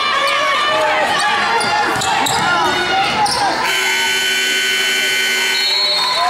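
Gym scoreboard horn sounding one steady, even-pitched blast for about two seconds, starting a little past halfway: the end-of-period buzzer as the game clock runs out. Before it, crowd voices and shouts with a basketball bouncing on the hardwood.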